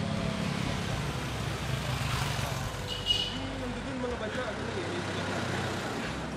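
Street traffic: a steady low rumble of vehicle engines with faint voices in the background. A short, sharp high-pitched chirp sounds about three seconds in.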